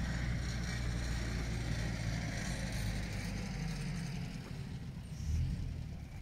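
A steady low rumble with a hiss above it, easing off over the last two seconds.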